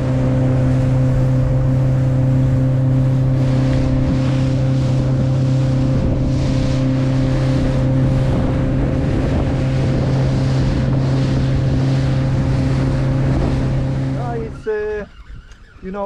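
Fishing boat's outboard motor running at speed, a steady drone under the rush of wind and water past the hull, until it stops near the end.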